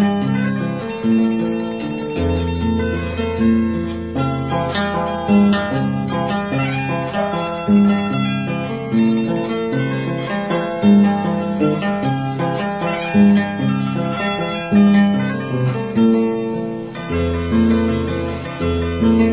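Andean harp played solo in a huayno: a plucked melody on the upper strings over bass notes on the lower strings, with a steady pulse of strongly accented notes about once a second.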